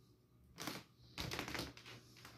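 Plastic baby toys clicking and rattling as they are handled: a short clatter about half a second in, then a quicker run of clicks in the second half.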